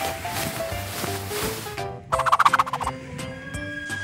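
Children's background music with added sound effects: a rushing hiss for the first two seconds, then a short, fast rattling warble of under a second.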